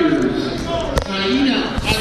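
A man's voice over the public-address system, echoing in a gymnasium, with a single sharp knock about a second in and a couple of lighter ones near the end.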